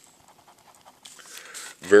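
A near-quiet pause with faint pencil-on-paper writing sounds. About a second and a half in comes a soft breath drawn in, then a voice starts speaking near the end.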